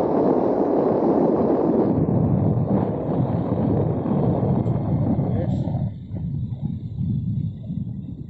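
Wind buffeting the microphone while travelling along a road: a loud, low rushing rumble that drops away suddenly about six seconds in.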